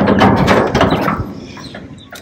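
Red sheet-metal gate being pulled open, clattering and rattling, loud at first and fading out after about a second.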